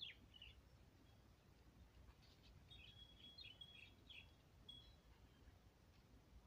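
Near silence outdoors, with faint bird chirps and a short thin whistled note, busiest between about two and five seconds in, over a faint low rumble.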